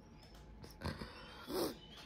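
A woman's labored breathing after a cardio workout: two short breathy sounds, the second a brief groan falling in pitch, about a second and a half in. She is out of breath and says breathing hurts.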